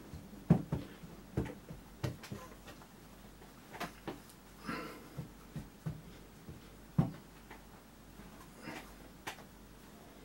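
Hands pressing and patting a cloth wrapped around a washed bird on a wooden worktable, blotting water from the feathers: soft, irregular thumps with faint rustles of fabric.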